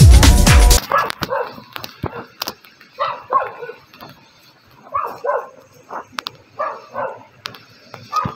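Electronic dance music with a heavy beat cuts off suddenly about a second in. After that, an animal calls in short pairs about every two seconds over faint scattered clicks.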